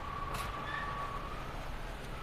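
Cars idling and creeping through a parking garage: a steady low engine rumble with a constant high whine running through it, and one brief knock about half a second in.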